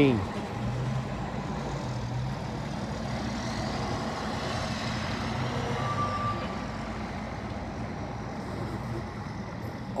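Light road traffic on a tram-lined street: a steady low engine hum from passing vehicles, easing off after about six seconds. A faint high whine rises and falls in the middle, and a short high beep comes about six seconds in.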